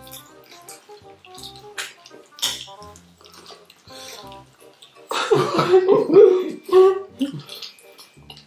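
Wet chewing and sucking on sauced chicken feet, with scattered mouth clicks over soft background music; about five seconds in, a loud voice cuts in for a couple of seconds.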